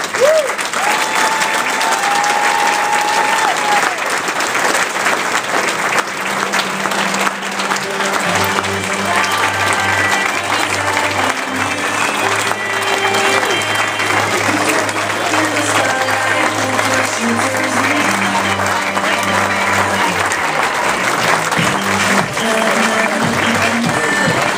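A large audience giving a long, steady round of applause, with music playing under it; a deep bass line joins the music about eight seconds in.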